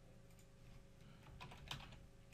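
Faint typing on a computer keyboard, a quick run of keystrokes in the second half, as a file name is typed in.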